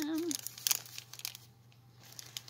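Clear plastic packaging of craft embellishments crinkling and clicking as it is handled, with one sharp crackle a little under a second in and softer rustling after.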